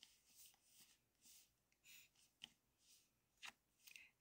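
Near silence: a few faint, short rustles in the first second or so, then two or three small soft clicks.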